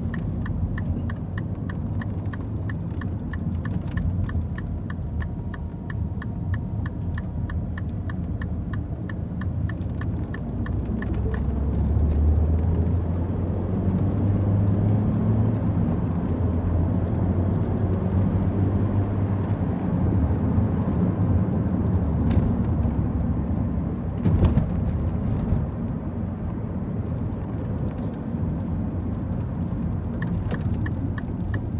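Engine and road noise inside a Mini hatchback's cabin while driving. A regular ticking, typical of the turn-signal indicator, runs for about the first eleven seconds. The engine note then grows louder as the car pulls away about twelve seconds in, and a single sharp thump comes near the end.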